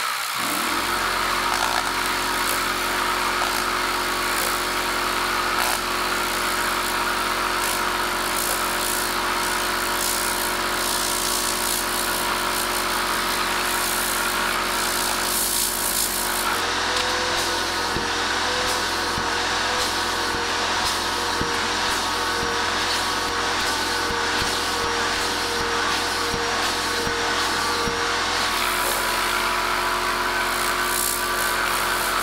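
Tornador air cleaning gun blasting compressed air into a fabric car floor mat, a loud steady hiss with a fast flutter. Under it an electric air compressor's motor starts up about half a second in and runs with a steady hum, which changes pitch a little past halfway and then settles back near the end.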